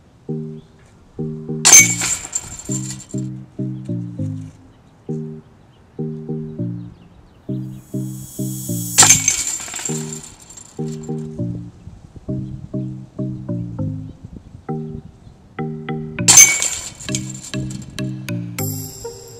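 A disc golf putter striking the steel chains of a practice basket three times, about seven seconds apart, each a sudden metallic clash of chains that rings on briefly. Background music with a plucked bass line plays throughout.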